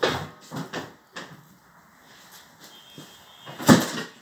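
A few short knocks and scuffs, several in the first second and a louder one near the end.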